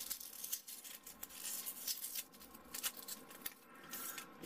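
Small glued pieces of XPS polystyrene foam being flexed and broken apart by hand, giving a run of faint crackles and ticks as the foam tears and crumbles. It is a strength test of a foam-to-foam glue joint.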